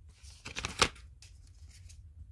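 Tarot cards being shuffled and handled: a quick rustling run of cards ending in a sharp snap just under a second in, then a series of fainter card flicks.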